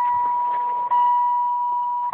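Car's dashboard warning chime sounding with the ignition switched on and the engine not running: one steady high beep tone, broken by a brief gap about once a second.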